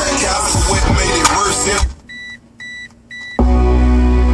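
Music playing through a car stereo cuts out just before halfway. Three short, evenly spaced high beeps follow, then a new track starts with heavy deep bass from a Bazooka 6.5-inch subwoofer.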